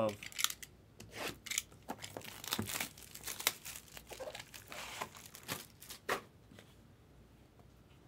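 Plastic shrink wrap being torn and crinkled off a sealed Topps Dynasty card box: a quick run of rips and crackles that stops about six seconds in.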